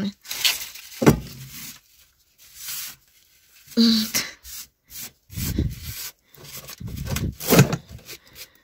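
Scraping and rubbing as wood-stove ash and cinders are swept up off the concrete floor of the ash pit, broken by a few short knocks, the sharpest about a second in.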